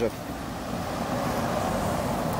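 Road traffic: a steady rush of car noise, a little louder from about a second in.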